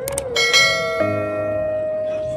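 A mouse-click sound effect, then a bright bell chime that rings and fades, from a subscribe-button animation with its notification bell. Steady musical notes carry on underneath.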